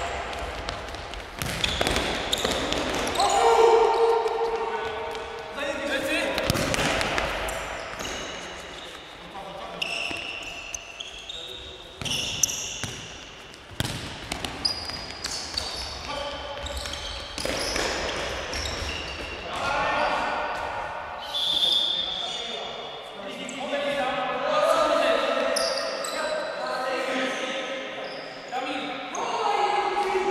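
Futsal ball being kicked and bouncing on a sports-hall floor amid players' shouts, all echoing in the large hall. One sharp, louder thump comes near the middle.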